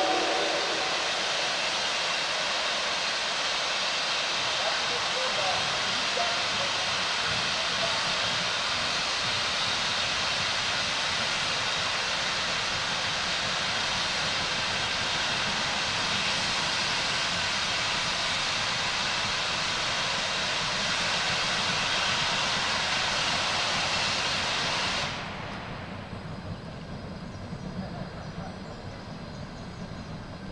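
Steady, loud hiss of steam venting from three geared steam locomotives (Shay and Heisler types) as they start off side by side. About 25 seconds in the hiss cuts off suddenly, leaving a quieter, lower rumble of the engines working toward the listener.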